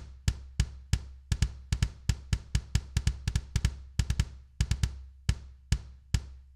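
Electronic kick drum played in rapid, uneven runs of about four to five hits a second, with a low boom carrying between the hits. It is the Alesis Strata Prime module's 24-inch copper kick sample.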